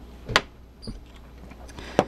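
A sharp click about a third of a second in, then a few faint ticks and light handling noise as a small bulb and its wires are moved on the bench, over a steady low electrical hum.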